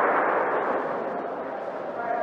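Audience applause dying away.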